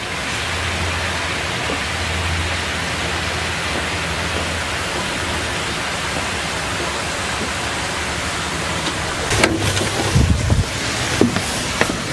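A steady rushing noise with a low hum underneath, then from about nine seconds in a string of sharp knocks and taps.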